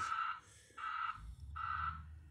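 Electronic beeping: three short pulses of steady pitch, evenly spaced about three-quarters of a second apart.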